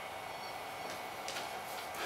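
Quiet workshop room tone with a few faint, short ticks from wooden dowels being handled.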